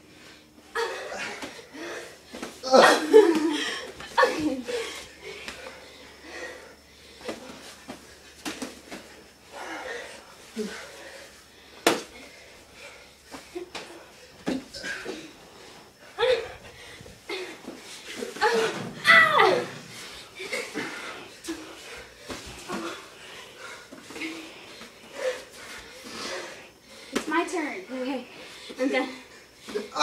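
People wrestling in play: scuffling, slaps and bumps mixed with laughter and shouts, in a small room's echo. One sharp smack stands out about twelve seconds in.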